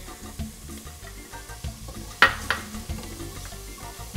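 Minced ginger being scraped into a pot of onions and garlic sautéing in olive oil and butter and stirred with a spatula: a soft sizzle under the stirring, with a sharp clink about two seconds in and a smaller one just after.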